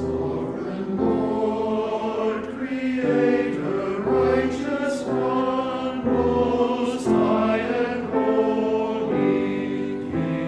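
Church choir singing, coming in all together at the very start, right after a piano introduction.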